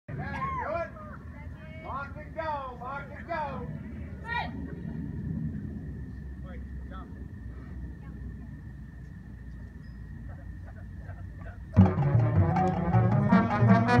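A marching band starts playing loudly about twelve seconds in, with low brass and mallet percussion entering together. Before that there are faint distant voices in the first few seconds, then a steady faint high tone over low outdoor noise.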